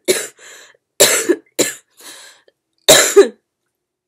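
A woman coughing into her hand: a fit of several harsh coughs about a second apart, the loudest near the end.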